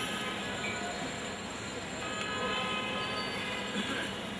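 Steady background noise with faint held tones underneath, no sudden sounds.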